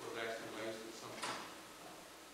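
Faint, distant speech from a person talking away from the microphone, then a brief sharp noise a little over a second in.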